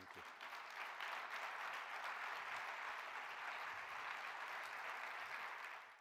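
Audience applauding, building up within the first second and then holding steady until it cuts off suddenly near the end.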